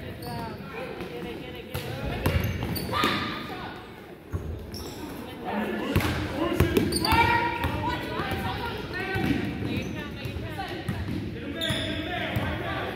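Basketball being dribbled on a hardwood gym floor, a scatter of sharp bounces, under spectators' raised voices calling out, loudest in the middle of the stretch. The sound carries the reverberation of a large gymnasium.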